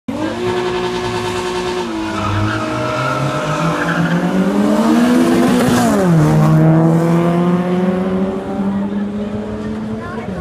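Race car engine accelerating, its pitch climbing steadily, then dropping sharply as the car passes close by about six seconds in, the loudest moment. It then runs on at a steady lower pitch as it moves away.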